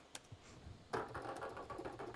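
A few short computer-keyboard keystrokes right at the start, the key press that runs a line of SuperCollider code, followed about a second in by a drawn-out spoken "so".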